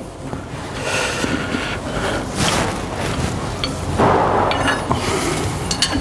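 Scraping and rubbing handling noise as the threaded service cap of a hydraulic filter housing is tightened by hand and spanner, with a few short metallic clicks near the end.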